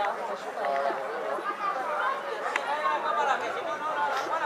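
Several people talking at once, their voices overlapping in lively chatter.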